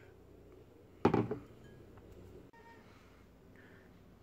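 A single sharp clink of a mug or kitchenware being knocked or set down, about a second in, with a short ring-out, followed by a few faint small knocks.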